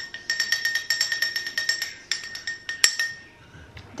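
A metal spoon clinking rapidly against the inside of a ribbed drinking glass, several ringing taps a second, as pistachio paste is scraped off it into the bottom of the glass. There is a short pause about two seconds in and a louder clink near three seconds, then the taps thin out.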